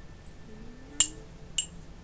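A small spoon clinking against a glass jar twice, about half a second apart, each a sharp ringing clink, the first louder.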